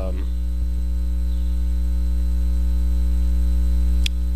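A steady, low electrical mains hum with a buzzy string of overtones, picked up in the microphone's audio.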